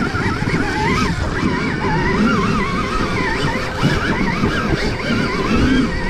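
Dirt bike ridden along a forest trail: its motor's pitch rises and falls with the throttle over a steady rumble of tyres and chassis.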